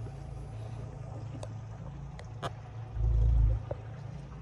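Boat engine idling with a steady low hum, while a few light clicks sound. A louder low rumble comes about three seconds in and lasts about half a second.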